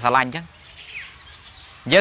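Man's speech through a clip-on microphone breaks off for about a second and a half. In the pause there is faint outdoor background noise and one short, faint falling chirp from a bird.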